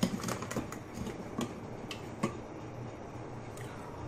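A pan cooking on a stove: a few faint light clicks and ticks in the first half, over a low steady hum that carries on alone to the end.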